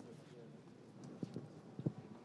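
Footsteps: three or four dull knocks of shoes on a hard floor in the second half, the last one loudest, over a faint murmur of people in a large church.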